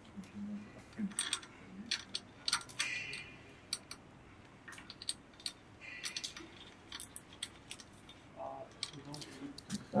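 A small plastic zip tie being threaded and pulled tight around a bike rack tube and cable: scattered light clicks and a couple of short ratcheting zips as the tie is cinched.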